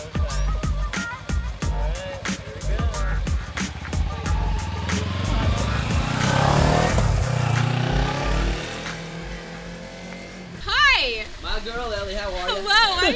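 Sport motorcycle engine pulling away with two riders aboard, growing louder to a peak about six to eight seconds in and then fading, under background music with a steady beat. Near the end a high, swooping voice breaks in.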